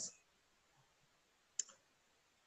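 Near silence, broken once about one and a half seconds in by a single short click from the presenter's computer as the presentation advances to the next slide.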